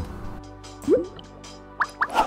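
Animated-logo intro sting: soft held music tones with a rising bubbly pop about a second in, then quick rising chirp-like pops near the end.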